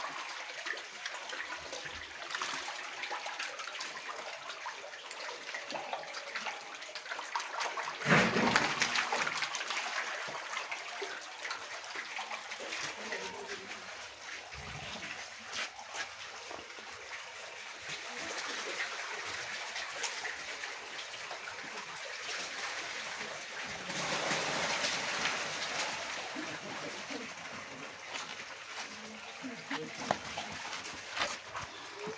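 Water splashing and trickling in a shallow catfish pond as it is refilled with fresh water and drains out through its pipe. The splashing swells louder about eight seconds in and again around twenty-five seconds.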